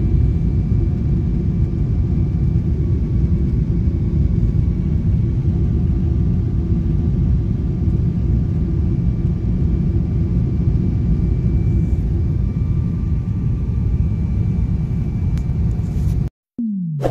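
Jet airliner cabin noise in flight: a steady low rumble of engines and rushing air, with a faint steady hum on top.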